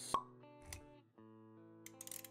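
Intro jingle for an animated logo: a sharp pop sound effect just after the start, then a soft low thump, over held musical notes.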